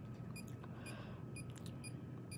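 Handheld EMF meter beeping faintly, short electronic pips about two a second: its alarm for a high field reading.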